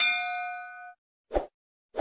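Notification-bell 'ding' sound effect: one bright strike with several ringing tones that fades out within about a second. It is followed by three short soft pops about half a second apart, the sound effects of icons popping onto the screen.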